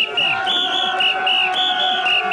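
A whistle blown in a steady rhythm, short blasts in pairs repeating about every half second, setting the beat for mikoshi carriers. Under it a crowd of carriers shouts and chants, with one long held note.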